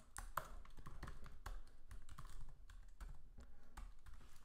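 Typing on a computer keyboard: irregular, fairly faint key clicks, a few a second, as a line of code is entered.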